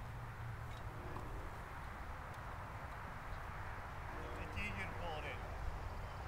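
Steady low outdoor background noise, with faint distant voices from about four and a half seconds in.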